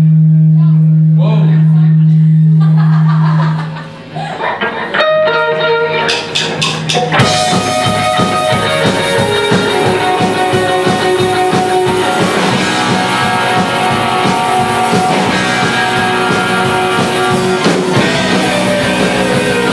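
Indie rock band playing live: a loud held low note for the first few seconds fades out, a few sparse guitar notes follow, and about seven seconds in the full band comes in with drums and electric guitars.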